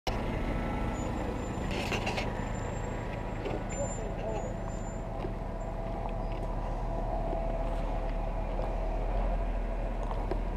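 Off-road 4x4's engine running low and steady as the vehicle crawls slowly along a rough dirt trail, heard from a camera mounted on the vehicle, with a brief clatter about two seconds in.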